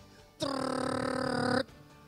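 A man's voice making a held vocal sound effect on one steady pitch for about a second, rough and buzzy in tone, imitating something taking off. Soft background music plays underneath.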